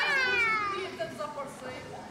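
A person's high-pitched voice in a long, wavering, meow-like wail that slides down in pitch over the first second, then fainter voices.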